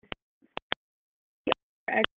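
A few short, isolated clicks in an otherwise silent pause, followed near the end by the brief start of a voice.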